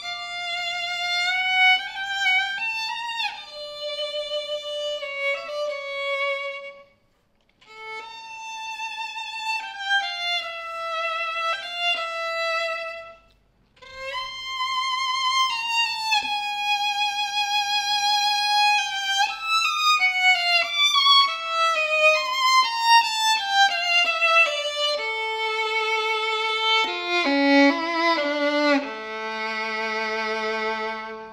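Solo violin, a French instrument by George Chanot (Paris, circa 1875, after Stradivari), bowed in a melody with vibrato. The playing breaks off twice briefly in the first half, then runs on, moving down to lower held notes with two strings sounding together near the end.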